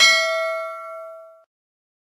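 A single bright bell ding that rings on and fades away within about a second and a half. It is the notification-bell sound effect as the bell icon is clicked.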